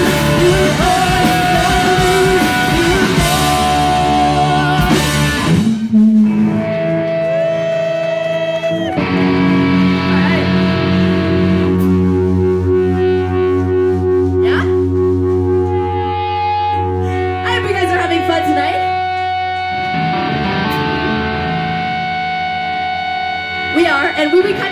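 Punk rock band playing live, with loud distorted electric guitar. The full band drops away about five seconds in, leaving long held guitar chords ringing, and the sound thickens again near the end.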